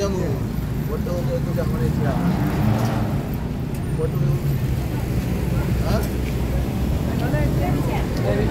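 Busy street ambience: a steady low rumble of road traffic with snatches of passers-by talking close by.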